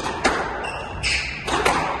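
Squash ball being struck by rackets and hitting the court walls during a rally: a series of sharp knocks, about four in two seconds, echoing in the enclosed court.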